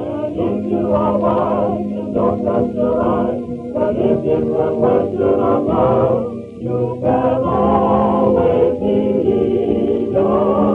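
A chorus of voices singing a song in a musical number. The sound is thin and narrow, as on an old film soundtrack.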